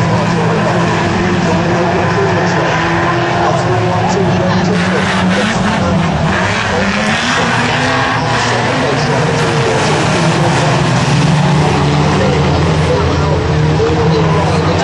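Engines of several racing vans running hard together around a short oval track, a steady loud mix of engine noise with no break.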